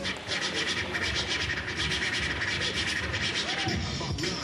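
A DJ scratching a vinyl record in a fast, steady run of scratches, with hip-hop music underneath.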